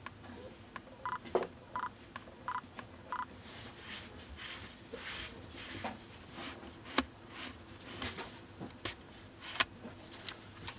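Four short electronic beeps, evenly spaced about two-thirds of a second apart, from a Nikon Z mirrorless camera. Then handling noise: gloved hands working the zoom ring of the NIKKOR Z DX 16-50mm lens, with soft rubbing and a few sharp clicks, the loudest near the end.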